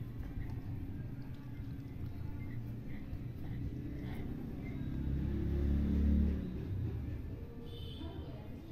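Soft background music with low, steady tones that swell a little past the middle. Under it, a metal spatula scrapes faintly as it stirs semolina in a pan.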